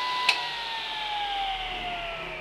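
Table saw running at speed with a steady whine, switched off with a sharp click about a quarter second in; the whine then falls steadily in pitch as the blade coasts down.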